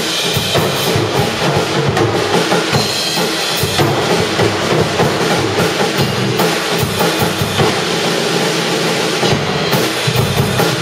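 A Yamaha drum kit and an electric bass playing together in a live drum-and-bass jam, with the drums and bass running continuously throughout.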